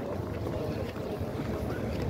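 Low rumbling wind noise on a phone's microphone over a steady outdoor background haze, with no voice in it.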